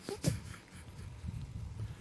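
A pause in speech: two or three faint clicks just after the start, then low room noise.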